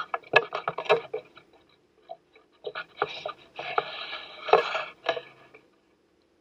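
A metal fork clinking and scraping against a ceramic bowl while stirring and mashing moist dog food, in irregular bursts of taps and scrapes that stop near the end.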